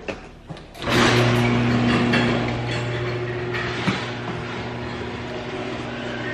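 A click, then about a second in an electric garage door opener starts up, its motor running with a steady hum and rumble as the door travels.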